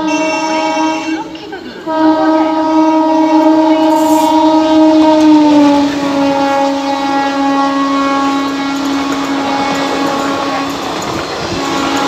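A WAP-4 electric locomotive's horn sounds in long blasts as an express passes at speed. After a short break near the start the horn comes back louder, and about halfway through its pitch drops as the locomotive goes by. The coaches' wheels then clatter over the rail joints under the horn.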